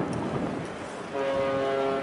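A ship's horn sounds a long, steady blast, starting about a second in.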